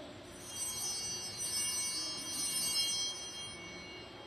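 Altar bells, a cluster of small hand bells, shaken in one bright ringing peal lasting about three seconds and starting about half a second in. This is the ring that marks the consecration at the altar during Mass.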